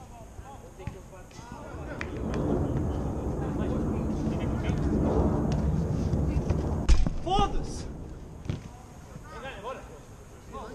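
A loud rumbling noise that swells for several seconds, broken by a sharp thud about seven seconds in, followed by short shouts from footballers' voices.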